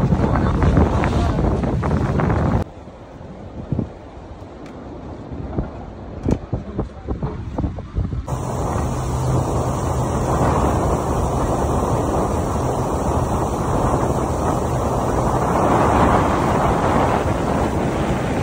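Wind buffeting the microphone on a motorboat under way, over the low steady hum of the boat's engine. About two and a half seconds in the noise drops to a quieter stretch with scattered knocks, then the wind and engine noise come back and hold steady.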